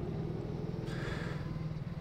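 Go-kart running steadily at low speed, heard from the onboard camera, with a steady low hum and a hiss that comes up about a second in.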